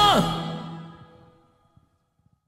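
A man's last held sung note drops off in a steep falling slide, while the backing track's final chord rings out and fades away over about a second and a half: the end of the song.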